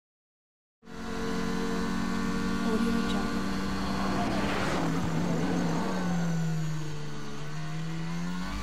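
Formula 1 engine running at steady high revs under test, cutting in suddenly about a second in. Its pitch sags slightly in the second half and climbs again near the end, with a brief rush of noise midway.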